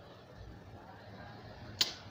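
A short pause in a man's talk: faint room noise, then one brief, sharp hissing noise near the end just before he speaks again.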